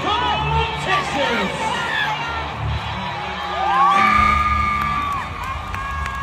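Arena crowd cheering and whooping during a bull ride. The roar swells about four seconds in, as the ride reaches the eight-second mark for a qualified ride, with a couple of long drawn-out whoops.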